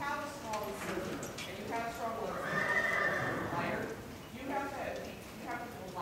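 Horse whinnying in several calls, the longest and loudest about halfway through.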